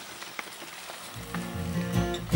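Mountain bike tyres rolling over dry fallen leaves, a crackling hiss with small snaps that grows louder as the bike comes closer. Acoustic guitar music fades in a little past halfway.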